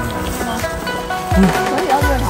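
Background music: sustained melodic tones, with a low bass line coming in about one and a half seconds in.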